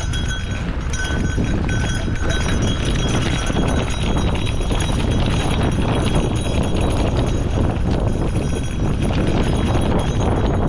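Gravel bike rolling fast downhill on a rocky dirt track: a steady run of crunching and rattling from the tyres hitting loose stones and the bike clattering over the bumps, over a low rumble of wind on the microphone.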